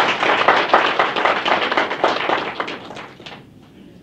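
Audience applause in a lecture hall, many hands clapping at once, dying away about three and a half seconds in.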